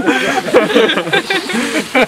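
Men talking and laughing, with short chuckles among the voices.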